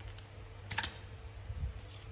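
Clear plastic sleeve crinkling and rustling as a hand saw is slid out of it, with a few small clicks and a sharper crackle a little under a second in.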